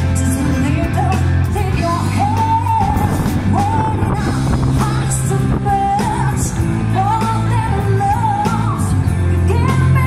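Live pop-rock band: a woman singing into a microphone over electric guitar, bass and a steady beat.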